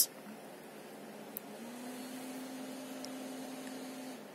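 CPU air-cooler fan set to turbo, running as a steady whoosh under a full-load multi-core render, with a low steady hum that sets in about a second and a half in. A short sharp click sounds at the very start.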